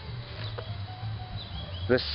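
A low steady hum with a few faint bird chirps, and a single light click about half a second in.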